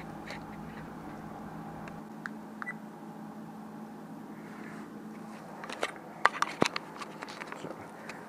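Steady low hum, with a cluster of sharp clicks and knocks about six to seven and a half seconds in from a small action camera and its cable being handled.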